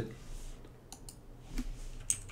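A few light, separate clicks from computer input, spaced out: a couple about a second in and more near the end.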